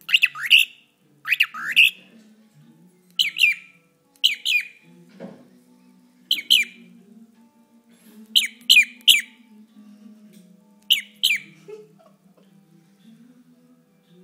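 A young cockatiel close to the microphone gives about seven loud bursts of two or three sharp, quick, falling chirps. The paired chirps are its version of its own name, "Jim, Jim".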